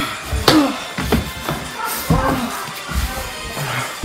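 A man laughing in short bursts over background music, with a short sharp hit about half a second in.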